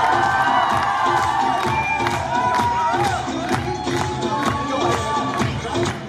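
Dance music with a steady beat played loud over a stage sound system, with an audience cheering and whooping over it; the music drops away at the very end.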